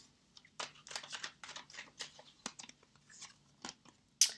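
A deck of tarot cards being shuffled by hand: a quiet, irregular string of soft clicks and taps as the cards slide and knock together.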